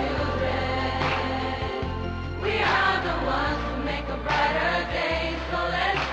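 A group of performers singing together in chorus over instrumental accompaniment with long held bass notes.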